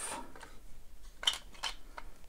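Light handling of hard plastic toy parts, with a couple of small clicks a little over a second in, as 3D-printed armour sections are worked off a transforming robot figure's legs.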